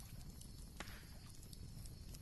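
Faint background: a steady low rumble with a few soft clicks.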